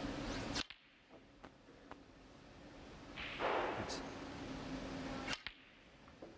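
Snooker cue tip striking the cue ball with a sharp click, followed by a few fainter clicks of balls colliding. A second sharp ball click comes near the end, and a short rush of noise lasting about a second falls in between.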